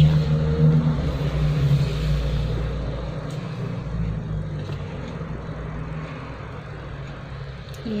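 A motor vehicle's engine rumbling in the background, loudest at the start and fading steadily away as it moves off.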